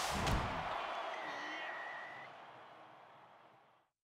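Short logo sound effect: a sudden hit with a quick second stroke, then a decaying tail with a brief steady high tone, fading out just before the end.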